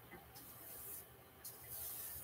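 Paintbrush dragged over a canvas with acrylic paint: two faint, hissy brush strokes, each about half a second long.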